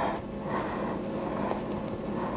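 Quiet room tone: a faint, steady low hum and hiss with no distinct events.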